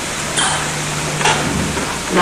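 A pause in speech filled by steady hiss and a low hum from an old analogue recording, with two faint brief sounds about half a second and a second and a quarter in.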